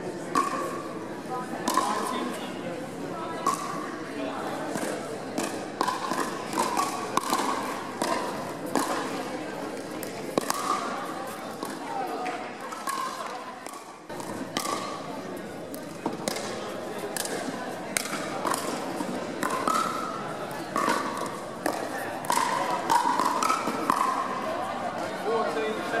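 Irregular sharp pocks of pickleball paddles hitting the plastic ball on several courts at once, over the steady murmur of players' voices echoing in a large indoor hall.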